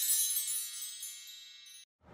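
The ringing tail of a chime intro sting: many high chime tones dying away, cut off sharply just before the end.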